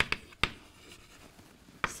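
Chalk writing on a blackboard: two sharp chalk taps in the first half second, then fainter scratching strokes.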